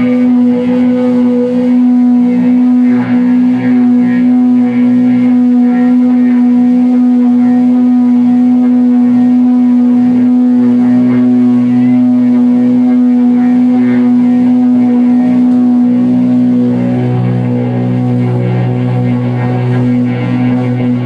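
Loud live rock band, electric guitar and bass holding a steady droning note with drums behind.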